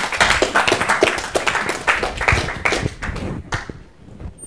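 Audience applauding, a dense spatter of many hands clapping that dies away near the end.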